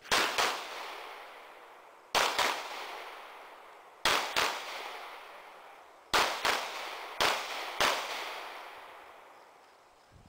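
Handgun shots fired in quick strings of two or three, a string about every two seconds, each trailing off in a long echo.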